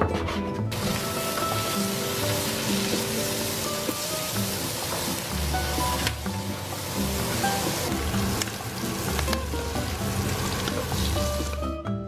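Stir-fry sizzling hard in a hot wok as garlic sprouts, chillies and sliced braised pork belly are stirred with a wooden spatula; the sizzle starts abruptly just under a second in and stops just before the end. Light background music plays underneath.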